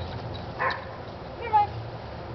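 Dog giving two short, high yips less than a second apart, the second one louder, while it plays.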